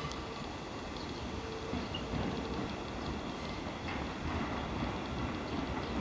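JR East 211 series electric multiple unit rolling slowly into the station over the points, a low rumble of wheels on rail with a faint steady tone that comes and goes.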